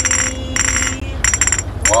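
Glass bottles clinked together in a steady rhythm, about four clinks a little over half a second apart, each with a short ringing tone, under a man's drawn-out sing-song taunt that fades in the first part.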